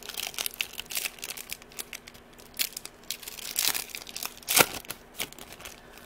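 Foil Yu-Gi-Oh! booster pack crinkling and crackling in the hands as it is torn open: a run of sharp crackles and rips, loudest a little after four and a half seconds in.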